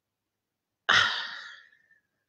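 A woman sighing: one sharp exhale about a second in that dies away over most of a second.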